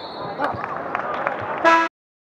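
Basketball game sounds: a high shrill tone at the start, then ball bounces and scattered shoe squeaks on the hardwood. Near the end a loud buzzer-like horn sounds briefly and cuts off abruptly.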